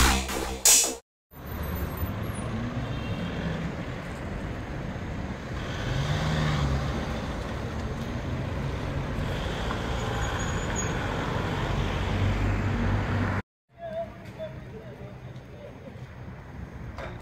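Street traffic noise with a van's engine as it drives past, a low engine note rising and falling about six seconds in. A short electronic jingle ends just before, about a second in, and the traffic cuts off near the end to quieter outdoor noise.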